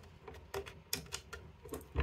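Faint, irregular small metallic clicks, about eight in two seconds, as a BNC adapter is pushed and twisted onto a scanner's BNC socket.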